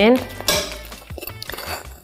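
Metal tongs clink once against a frying pan about half a second in while turning cinnamon rolls browning in butter, followed by quieter small ticks.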